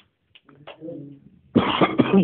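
A person coughs harshly, starting suddenly about one and a half seconds in, after some faint murmured speech.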